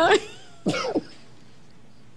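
A person coughing: two short harsh coughs about half a second apart.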